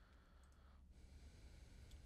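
Near silence: faint room tone with a couple of soft computer mouse clicks, one about half a second in and one near the end.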